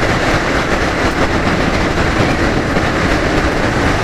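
Steady rush of wind over the microphone of a motorcycle riding at highway speed, with the engine and tyre noise running underneath.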